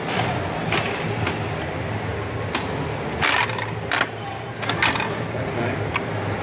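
Coin-operated candy vending machine being worked by hand: its metal crank turning with a series of ratcheting clicks, the strongest about three seconds in, as it dispenses candy into the chute.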